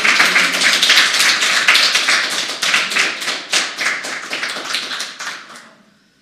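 Applause: many hand claps together, thinning out and dying away near the end.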